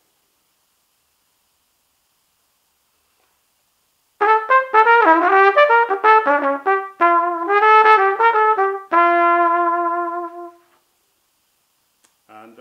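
After about four seconds of silence, a trumpet is played through a 3D-printed orange PLA copy of a Bach 1½C mouthpiece. It plays a quick jazz run of notes and ends on one long held note that fades away. The player finds that the printed mouthpiece gives a slightly softer sound with some intonation problems.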